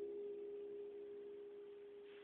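The last note of an acoustic guitar ringing out and slowly fading, a single clear tone left after the chord, heard through a cellphone's microphone.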